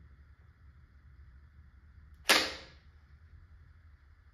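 Drum magazine snapped into the grip of a Tippmann TiPX paintball pistol: one sharp clack a little over two seconds in, trailing off over about half a second.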